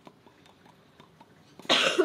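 A person's single short cough near the end, after a stretch of near-quiet broken only by faint small clicks.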